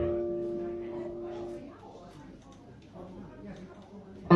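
Electric guitar struck once and left to ring, fading out over about a second and a half, followed by faint room sound.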